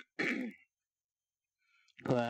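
A man clearing his throat once, briefly, close to a microphone, followed by about a second of silence.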